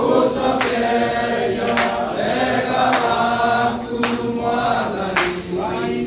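A group of men singing together, with a sharp hand clap about once a second keeping the beat.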